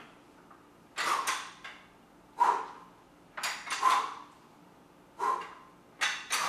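A man's sharp, effortful breaths or grunts, four of them about one every second and a half, in time with the reps of a dumbbell curl.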